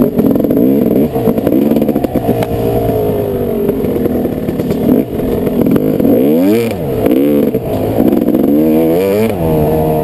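Dirt bike engine under the rider, revving up and down on a rough bush track, with two sharp rises and falls in pitch about six and a half and nine seconds in, then steadying near the end.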